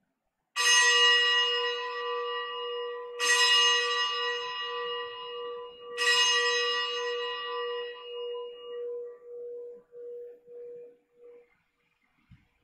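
A consecration bell struck three times, about two and a half seconds apart, as the chalice is raised at the elevation. Each strike rings out bright, and a pulsing hum lingers and fades away after the last.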